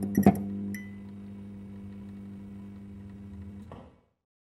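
A neon sign switching on: a couple of sharp electrical clicks, then a steady low electrical buzz that stops just before the end.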